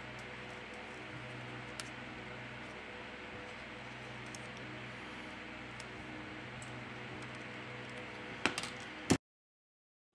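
Faint sharp clicks of the middle frame's clips snapping loose as a plastic pry pick works around the edge of a Samsung Galaxy A41, over a steady room hiss. Two louder clicks come near the end, then the sound cuts out.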